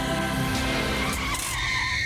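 A sung ballad with backing music gives way, about a second in, to a long, steady, high tyre screech as a vehicle brakes hard.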